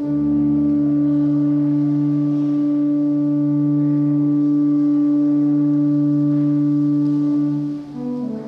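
Pipe organ holding one long chord, with a deep bass note fading out about a second in; the chord releases near the end and moving notes follow.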